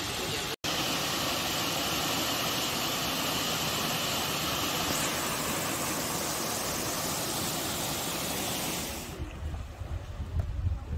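Rushing water of Cheonjeyeon Waterfall: a steady, even hiss, broken by a brief dropout under a second in. About a second before the end it gives way to wind buffeting the microphone, an uneven low rumble.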